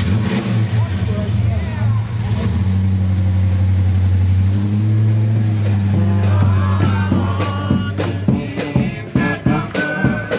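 A truck engine running loud and steady, its pitch stepping up about halfway through as it is revved and held. Near the end a band's rattling percussion starts up over it, and the engine sound then drops away.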